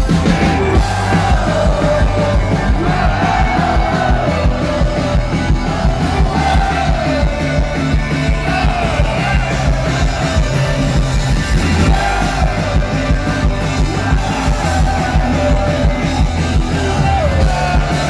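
Live rock band playing loud with electric guitars, bass, drums and sung vocals, heard from within the audience, with crowd voices yelling along.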